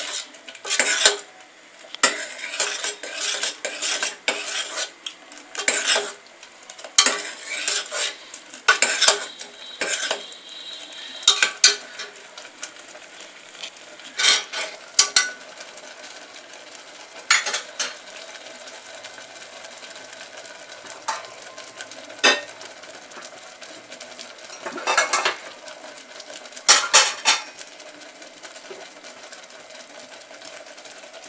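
Steel ladle stirring thick urad dal and palm-jaggery porridge in a stainless steel pressure cooker pot, clinking and scraping against the metal. The strokes come rapidly for about the first twelve seconds, then only now and then, over the faint hiss of the porridge simmering and bubbling.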